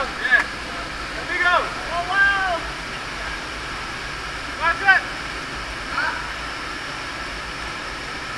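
Steady rush of a waterfall's water pouring into a narrow rock gorge, with a few short voice calls over it, the loudest near the start and about five seconds in.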